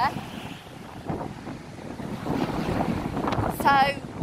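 Wind buffeting the microphone in uneven gusts, a rough rumbling rush that rises and falls.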